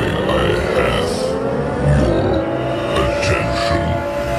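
A steady low rumble with a slowly rising drone, and a deep voice speaking over it.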